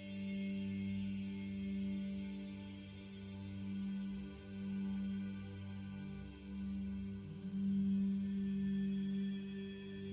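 Calm ambient meditation music: a low sustained drone that swells and fades every second or two, with faint higher ringing tones above it.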